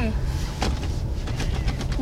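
Wind buffeting an outdoor microphone, heard as a steady low rumble, with a light knock about a third of the way in.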